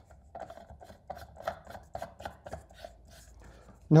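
An LED screw-base bulb being turned into a lamp socket: a quick run of short scrapes and clicks as the threaded base turns in the socket.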